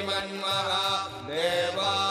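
Sanskrit Vedic chanting in a single pitched voice, with notes sliding up and down over a steady drone.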